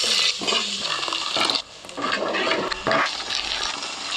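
Tomato-onion masala sizzling in a pot while a wooden spoon stirs it: a wet, hissing crackle that drops away briefly partway through.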